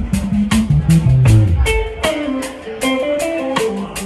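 Live blues band playing a slow blues: electric guitar picking single-note lines over bass and drums, with a steady beat. About a second in, the bass steps down through a run of notes.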